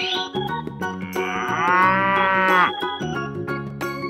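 A cow mooing once, a single long call starting about a second in that rises and then falls in pitch, over light background music.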